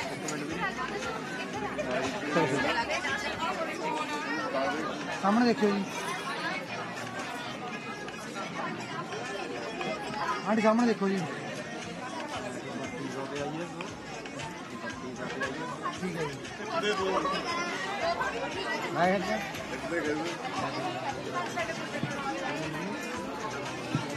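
A group of people chattering, several voices talking over one another at once without a single clear speaker.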